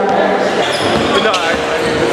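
Basketball dribbled on a hardwood gym floor, with a crowd's chatter running underneath.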